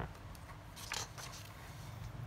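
A sheet of paper handled on a desk: a short click at the start, then a brief, faint paper rustle about a second in.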